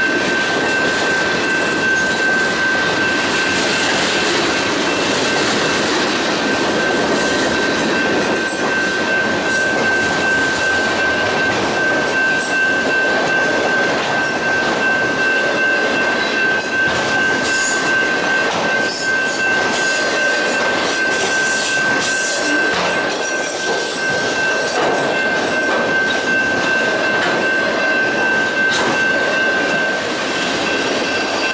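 Freight train cars rolling past at track side: a steady rumble and clatter of wheels on the rails, with a steady high-pitched tone running under it throughout.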